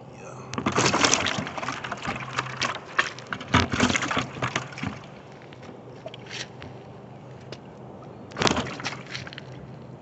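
Crackling, rustling handling noise close on the microphone as a caught bluegill is pressed against the camera, heaviest in the first half with another short burst near the end.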